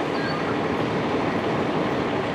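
Steady noise of vehicle engines running, with no distinct event standing out.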